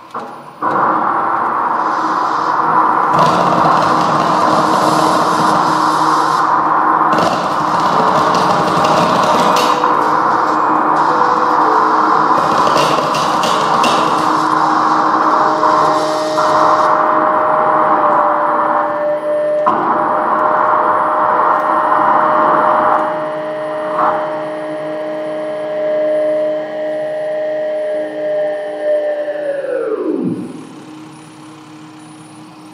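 Free improvised experimental music from violin and electronics: a loud, dense, noisy drone with repeated bursts of high hiss in the first half, joined about halfway by a held steady tone. At the very end the whole sound slides sharply down in pitch and drops away.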